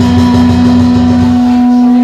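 Vietnamese funeral music (nhạc hiếu): a wind instrument holds one long steady note over a low, pulsing accompaniment. The accompaniment drops out about one and a half seconds in while the note carries on.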